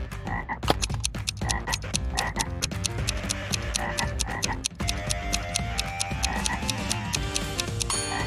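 Cartoon frog croaking sound effect, repeated every second or so, over a fast, even ticking of a countdown timer. A few held musical notes join in the second half.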